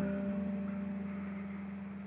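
A held chord from a live jazz trio of electric bass and piano, ringing and slowly dying away.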